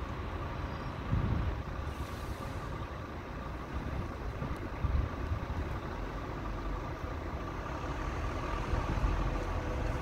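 Steady low outdoor background rumble with a faint steady hum, swelling briefly louder about a second in and again around five seconds.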